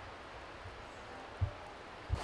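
Faint steady outdoor background hiss, with one brief low thump about one and a half seconds in.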